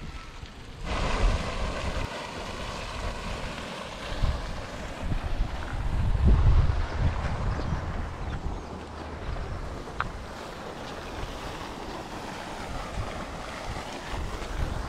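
Wind buffeting the microphone outdoors, a rumbling gust noise that swells and fades, strongest about halfway through.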